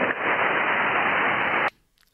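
Steady hiss of HF band noise from an Icom IC-7300 receiving on 20-metre SSB, limited to the receiver's narrow voice passband. It cuts off suddenly near the end as the rig switches to transmit and mutes its receive audio.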